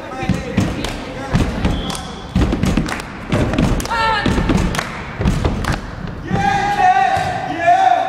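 Repeated thuds and knocks echoing in a large gymnasium, with people shouting and calling out, and one long held shout in the last second or two.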